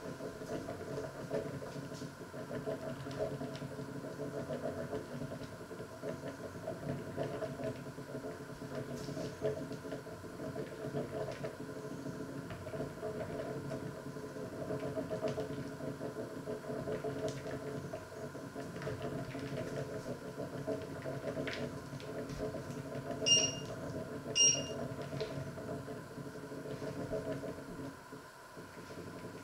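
A steady rumbling hum from pots heating on a glass-top electric hob. Near the end come two short, high electronic beeps about a second apart.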